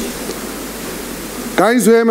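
Steady, even hiss of background noise in a pause in a man's speech; his voice comes back in near the end.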